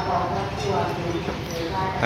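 THN-class diesel railcar rolling slowly into the platform, engine running and wheels clattering steadily over the rails.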